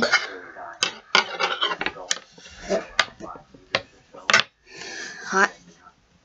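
Metal wire coat hanger being twisted and bent by hand, giving a series of irregular sharp metallic clicks as the wire knocks and scrapes against itself.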